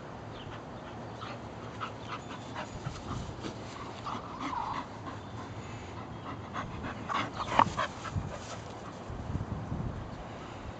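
Bull terrier panting hard during fetch, in short rapid breaths. The loudest cluster of sharp sounds comes about seven and a half seconds in.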